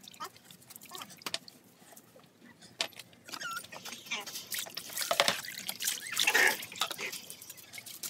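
Bath water dripping and splashing in a plastic basin around a wet puppy, with scattered small drips at first. From about four seconds in, water is scooped with a plastic dipper and poured over the puppy, making louder splashing for a few seconds.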